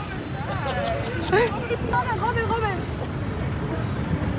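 Unclear voices talking over a steady low rumble of city street traffic.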